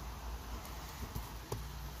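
Comic books being flipped through one by one in a cardboard box: a few light taps and knocks as the bagged books fall against the stack, the clearest about a second and a half in, over a steady low background rumble.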